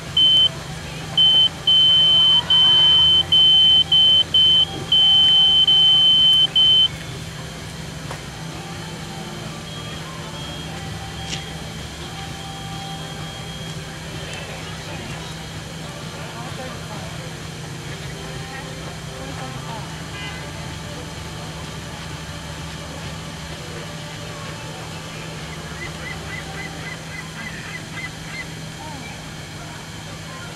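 Loud, high electronic beeping from a race finish-line timing system, a single steady tone sounding in broken stretches for about the first seven seconds and then stopping, as a runner crosses the finish. Faint background voices and a low steady hum go on after it.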